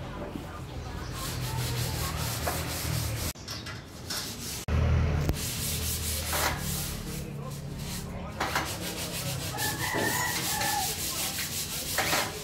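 Rubbing and scraping strokes on a welded steel frame, over a low steady rumble.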